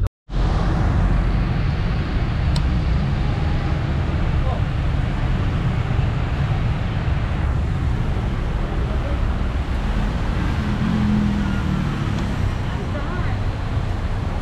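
Steady street traffic noise with wind rumbling on the microphone, cutting in after a split-second dropout at the start.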